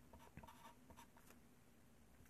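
Very faint pencil scratching on paper: a few short strokes writing a two-digit number, fading out a little past the first second.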